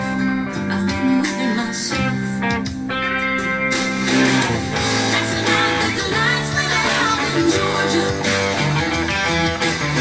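Electric guitar, a Fender Telecaster in open G tuning, played with hybrid picking through an instrumental passage of picked notes and chords.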